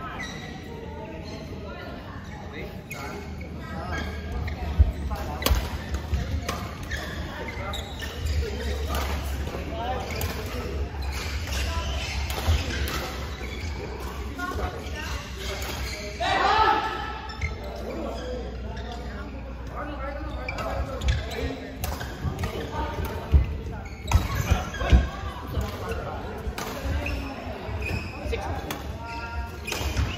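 Badminton rackets striking a shuttlecock during a doubles rally, a scatter of sharp smacks that echo in a large indoor hall, over the steady hum of the hall and people's voices.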